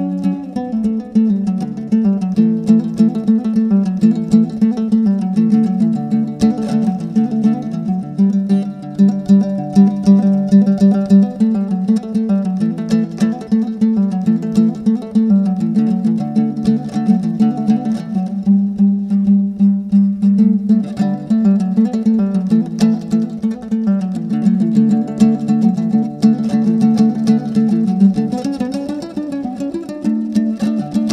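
Solo Kazakh dombra playing a küi, a traditional instrumental piece: fast strummed notes, with the melody rising and falling against a held lower note.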